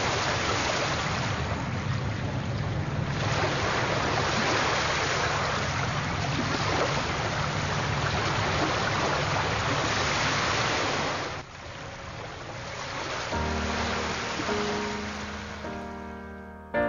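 Sea surf washing onto a sandy beach, with wind on the microphone adding a low rumble. The surf sound cuts off sharply about eleven seconds in, and a piano starts playing a few seconds before the end.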